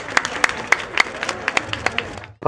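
Hand clapping in a steady, even rhythm, about three to four claps a second, over a faint background of crowd noise.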